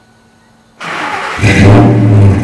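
2001 Ford F-150's 5.4-litre V8 starting up, exhausting through a single Flowmaster muffler with the catalytic converters cut off. The starter cranks suddenly almost a second in, and about half a second later the engine catches and runs loudly with a deep exhaust note.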